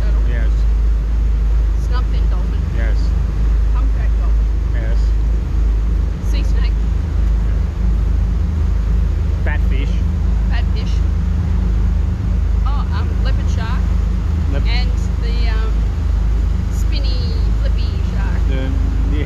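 Steady low rumble of a boat under way at sea, its engine running with wind on the microphone; faint voices come and go over it.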